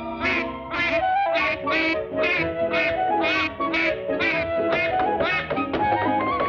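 Cartoon duck quacks, about a dozen short quacks in an even run of roughly two a second, over an orchestral cartoon score.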